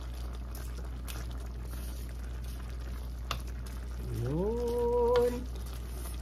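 Coconut-milk sauce simmering in an aluminium wok, stirred with a wooden spoon, over a steady low hum. A single click comes about three seconds in. About four seconds in, a brief hummed "mmm" rises in pitch and holds for about a second.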